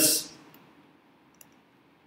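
A man's voice trails off at the very start, then a quiet stretch with a few faint clicks, the clearest about one and a half seconds in: a stylus tapping on a digital writing tablet.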